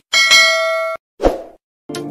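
Notification-bell sound effect: a quick mouse click, then a bright bell ding that rings for about a second and cuts off suddenly, followed by a short, lower sound that fades.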